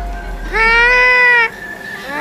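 A high-pitched, drawn-out taunting "haaa" from a single voice, held for about a second from about half a second in and bending slightly up then down, over a faint steady background music tone.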